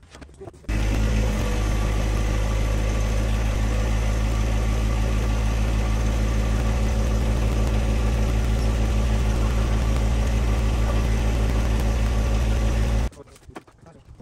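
John Deere 1025R compact tractor's three-cylinder diesel engine running steadily at idle close by. It starts abruptly just under a second in and cuts off abruptly about a second before the end.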